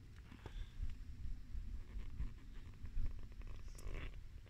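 Faint, uneven low rumble with a few light ticks from an inflatable boat moving slowly under a 45 lb Minn Kota 12-volt electric trolling motor at low power.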